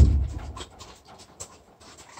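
The front door of a horse trailer banging shut at the very start, a single heavy thud with a low boom that dies away within about half a second. Faint steps of hooves and feet crunching on gravel follow.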